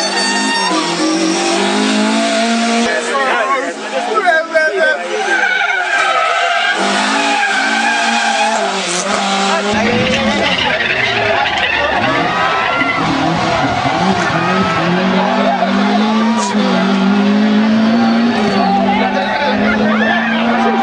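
Nissan 120Y rally car's engine revving with tyres squealing as it drifts, over voices from onlookers. A deeper rumble joins about halfway through.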